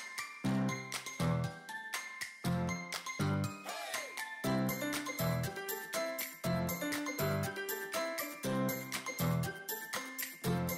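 Upbeat instrumental background music with a steady, evenly repeating beat and bass.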